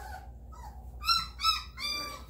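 A three-week-old Rhodesian Ridgeback puppy squealing while being handled, with three short, high-pitched cries in the second half.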